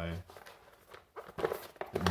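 A short spoken word at the start, then quiet handling noise: a few faint clicks and knocks about a second in as the charger's box and packaging are handled.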